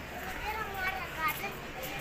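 Background voices of people nearby, including high-pitched children's voices talking and calling.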